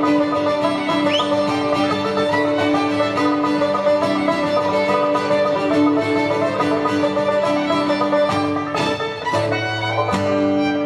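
A traditional Irish band playing an instrumental tune on fiddle, banjo and strummed acoustic guitar.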